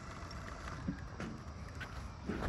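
Quiet outdoor background: a low, steady rumble of wind on the microphone, with a few faint ticks.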